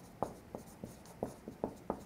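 Marker pen writing on an easel flip chart: a quick run of short, irregular strokes as a word is written out.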